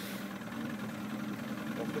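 Boat engine idling steadily, a low even hum.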